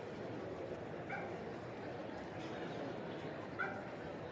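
A small dog yips twice, short high barks about a second in and again near the end, over the steady hubbub of a crowded hall.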